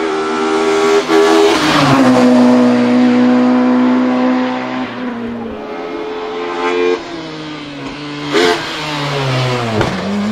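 Ford Escort Mk2 race car's 2.0-litre naturally aspirated 16-valve inline-four with individual throttle bodies, screaming at high revs under full throttle. The pitch drops sharply about a second and a half in and holds lower for a few seconds. It then climbs again as the engine revs up, with a short sharp crack about eight and a half seconds in.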